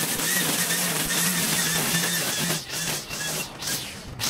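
Stihl string trimmer running at high throttle, its line cutting tall overgrown grass. The engine note eases off briefly a few times in the second half.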